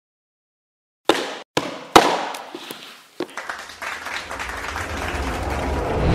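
Opening sound-design sting: after about a second of silence, three sharp hits with ringing tails, then a few lighter hits, then a low rumbling swell that builds steadily toward the logo reveal.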